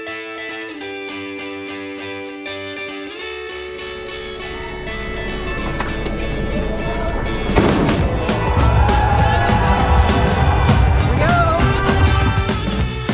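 Background music with sustained chords, giving way after a few seconds to the noise of a crowd of runners and spectators at a road-race start. A sudden loud burst comes a little after halfway, followed by cheering voices and a low rumble of wind on the microphone.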